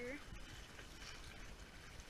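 Faint, steady rush of running creek water.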